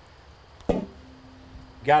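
A single sharp metal clank about two-thirds of a second in, as the solid steel lid comes off the cast iron scald pot and is set down. A faint steady tone follows briefly.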